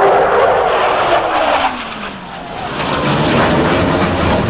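Blue Angels F/A-18 Hornet jet flying past: a loud jet roar whose pitch falls steadily as it goes by, easing about two seconds in, then swelling again near the end.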